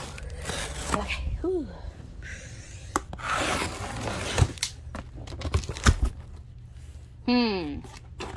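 A cardboard shipping box being opened by hand: packing tape torn off in noisy rips, the longest about three seconds in, among knocks and scrapes of cardboard.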